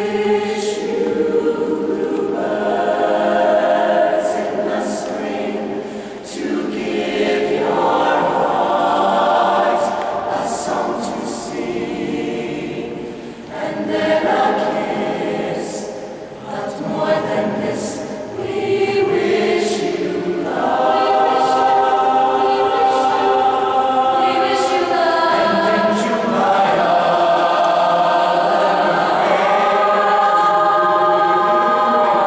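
Mixed choir of young men and women singing in sustained harmony, several held notes at once. Phrases swell and ease off every few seconds, then the sound grows fuller and stays steady over the last third.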